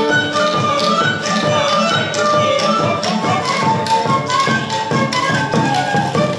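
Moldavian folk dance music: a high flute melody over a quick, even drum beat.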